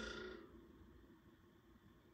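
Near silence: quiet room tone, with a faint short sound at the very start that fades within half a second.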